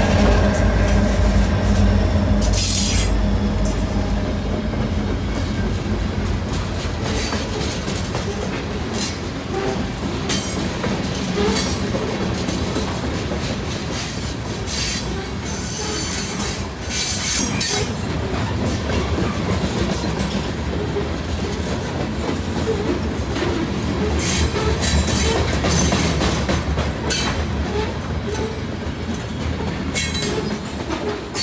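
Freight train passing close by: diesel locomotive engines running for the first couple of seconds, then a long string of covered hopper cars rolling past with steady wheel rumble, repeated wheel clicks over the rail joints, and some wheel squeal.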